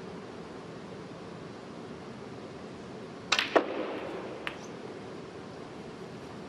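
Snooker cue striking the cue ball, then about a quarter-second later a louder clack as the cue ball hits the pack of reds, with a brief rattle of balls and one more click about a second later: a shot opening up the reds.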